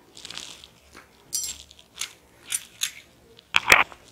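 A sheet of paper handled in the hands: a soft rustle, then a series of small crackles and taps, with the loudest crackle and knock near the end.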